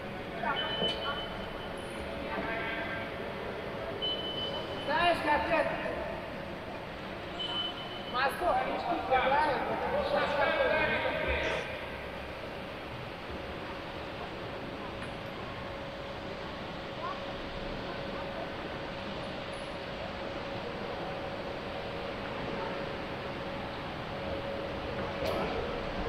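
Indistinct, echoing voices in an indoor swimming and diving hall, over a steady background hiss. Three short high tones sound among the voices. The voices fall away about twelve seconds in, leaving the hiss and a faint steady hum.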